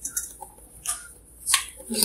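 Three sharp clicks spread over two seconds, with light rustling between them.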